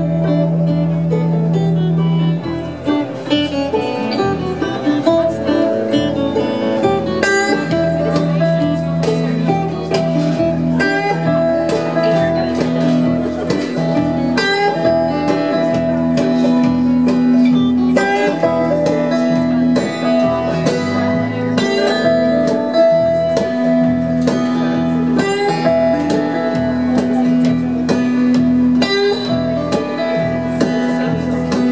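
Live folk band playing an instrumental passage: strummed acoustic guitar, two bowed violins, electric guitar and drum kit, with held string notes over a steady beat.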